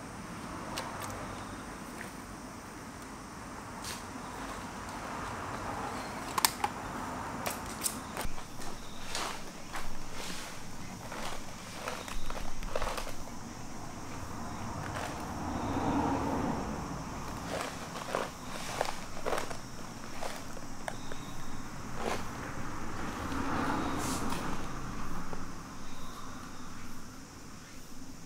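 Scattered light rustles and clicks of a harnessed cat moving about on a tent's groundsheet and fabric, over a faint steady outdoor background.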